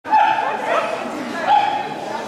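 A dog giving high-pitched yips, one just after the start and another about one and a half seconds in, with people talking.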